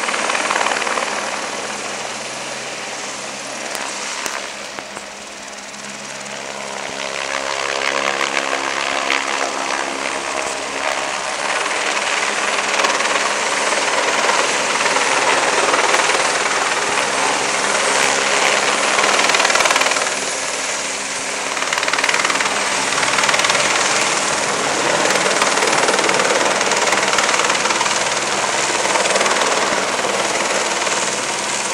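Airbus AS350 Écureuil single-engine helicopter flying over and around at close range, a steady rotor and turbine noise. It fades for a few seconds near the start, then builds again and stays loud, with a brief dip about two-thirds of the way through.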